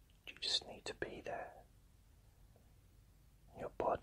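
Only whispered speech: a man whispering a short phrase about half a second in, then a pause of about two seconds, then whispering again near the end.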